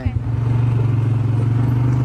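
ATV engine picking up speed in the first moments and then running at a steady pitch as the four-wheeler drives off.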